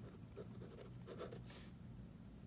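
Handwriting on notebook paper: a few short, faint scratchy strokes as numbers are written out.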